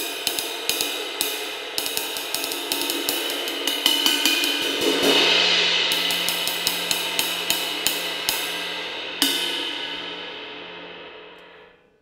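23-inch hand-made ride cymbal of about 2350 grams played with a wooden drumstick in a steady ride pattern, its wash swelling about five seconds in. The playing stops about nine seconds in and the cymbal rings out, fading away near the end.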